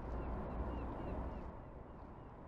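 Outdoor city ambience: a steady low rumble, with faint bird chirps repeating about four times a second that fade out after a second and a half.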